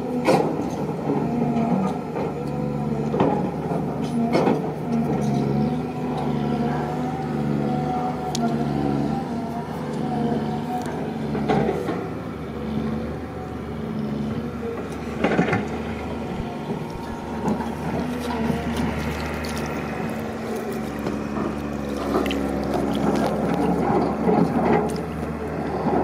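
A steady motor hum, with occasional sharp clicks and scrapes from hands digging in dry, crumbly soil.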